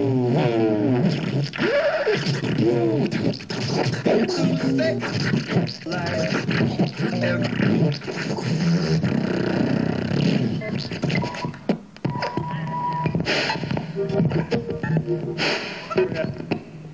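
Wordless vocal noises sung into a microphone and amplified through a PA, with warbling, bending pitches and scratchy noise between them, in the manner of beatboxing.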